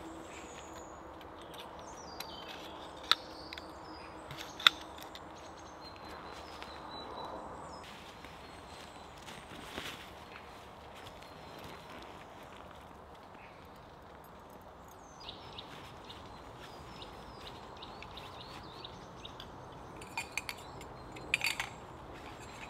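A canvas pup tent being taken down on dry leaf litter. Metal tent pole sections clink sharply twice a few seconds in and several more times near the end, between rustling and footsteps, with faint bird calls.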